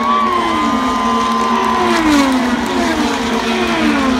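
IndyCar race cars' 2.2-litre twin-turbo V6 engines passing one after another, each engine note falling in pitch as the car goes by, over a steady engine hum.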